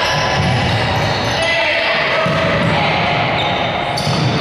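Reverberant sports-hall noise of an indoor volleyball rally: players' indistinct voices and shouts, sneakers on the wooden court and the ball being played.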